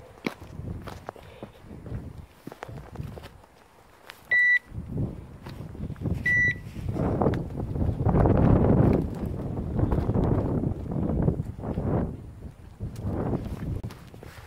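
Two short, steady-pitched electronic beeps about two seconds apart, from a hunting dog's beeper collar. After them come loud rustling and crunching footsteps pushing through dry scrub and branches on rocky ground.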